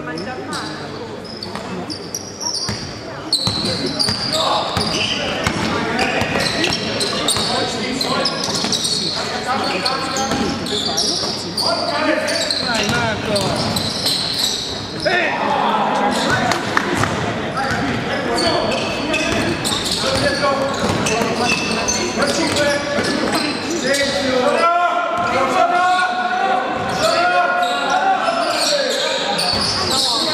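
Indoor basketball game: players and spectators shouting, their voices echoing in a large gym, with the ball bouncing on the court during play. The shouting is loudest near the end.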